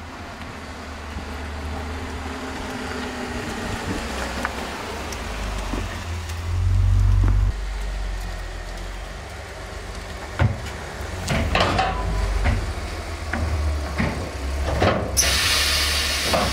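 Audi S4's 3.0 TFSI supercharged V6 running at low speed with a steady low rumble, swelling louder for about a second around seven seconds in. Later come a series of sharp knocks and clicks, and a short burst of hiss near the end.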